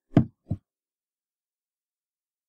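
A single short spoken word and a brief soft sound right after it, then dead silence, as if cut off by a noise gate.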